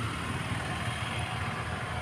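Steady low rumble of a vehicle engine running, with no change in pitch.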